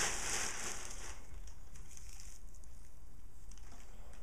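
Crinkling rustle of packaging being handled, loudest in about the first second, then dying down to faint handling rustles.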